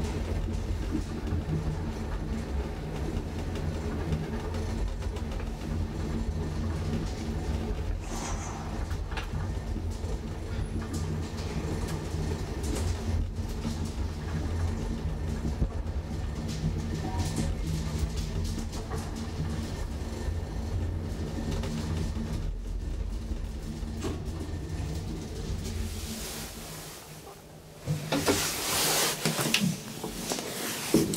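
1960s KONE high-rise traction elevator car running, WPM-modernised: a steady low rumble and hum of the car in travel. About 26 seconds in it dies away as the car slows and stops. A louder clatter follows near the end.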